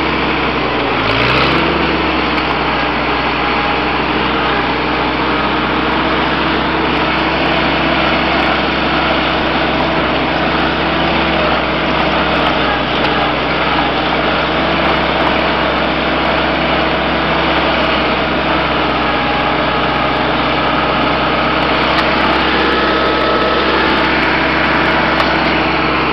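1956 Farmall Cub tractor's four-cylinder flathead engine running steadily at an even speed while the tractor is driven, heard from the driver's seat.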